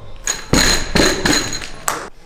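A loaded barbell of about 100 kg with rubber bumper plates is dropped from deadlift lockout onto a rubber gym floor. It lands with a heavy thud about half a second in, then bounces and rattles with ringing metal for over a second, and gives a last sharp clank near the end.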